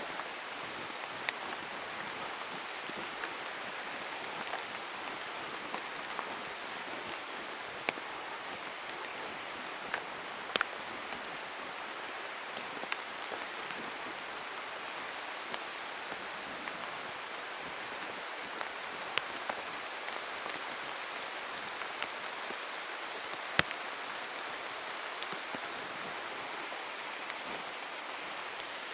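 Steady rain falling in a leafy forest: an even hiss with scattered sharp ticks at irregular intervals, the loudest a little before the last few seconds.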